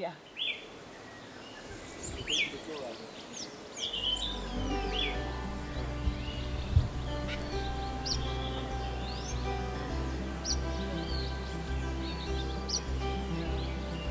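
Many tropical forest birds singing and calling, quick chirps and whistled notes overlapping. About four seconds in, background music with a steady bass line comes in and runs under the birdsong.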